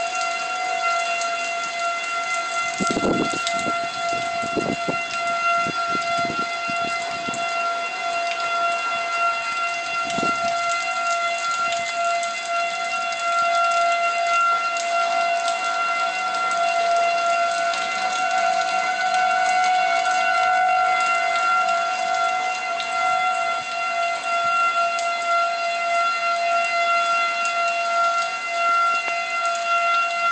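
Outdoor tornado warning siren sounding a steady two-tone wail, with a few low thumps of wind on the microphone a few seconds in.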